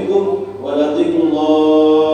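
A man's voice chanting in Arabic, a melodic, drawn-out recitation that holds a long steady note near the end.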